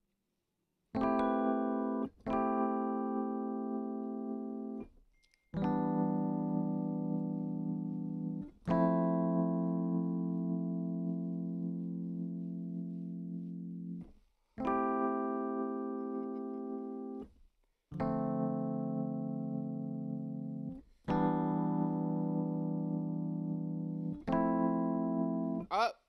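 Electric-piano-style keyboard chords played one at a time, about eight in all, each held for one to four seconds and fading away before the next. They are chord voicings being tried out for a progression, some with added ninths.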